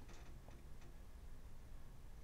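Quiet room tone with a few faint, light ticks as small steel fishing hooks, a treble hook and a J hook, are handled over a workbench.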